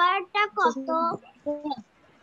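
A child's voice in short, drawn-out, sing-song phrases, with pitches held steady in places, stopping shortly before the end.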